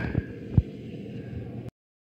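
Wind buffeting the camera microphone, a low rumbling noise, with two short low thumps within the first second. The sound cuts off suddenly to dead silence near the end.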